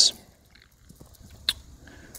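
Quiet handling noise with faint small ticks and one sharp click about one and a half seconds in, as a bore brush is screwed onto a coiled pull-through cleaning wire and the wire is unwound.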